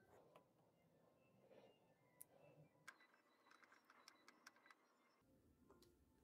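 Near silence: room tone with faint small clicks and ticks of the plastic unit being handled, mostly between about three and five seconds in.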